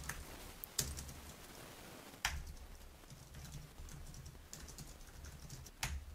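Faint typing on a computer keyboard, with a few sharper key clicks standing out.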